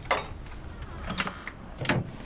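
Sound effect of a door being opened and entered: a sharp latch click at the start, a few small knocks about a second in, and a louder thump near the end.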